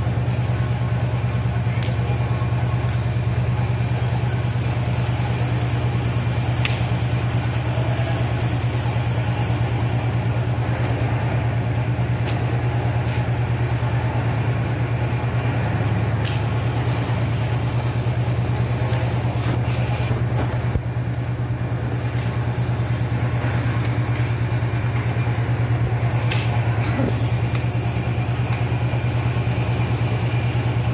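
Steady low mechanical hum, like an idling engine or motor, with a few faint scattered clicks.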